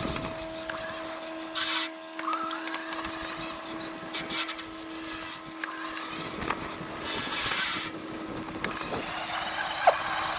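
Cyrusher Ranger fat-tyre e-bike's electric motor whining at one steady pitch as it rides over a rough grassy track, with the bike rattling and knocking over bumps and short brushing sounds from the tyres and vegetation. A sharp knock comes just before the end.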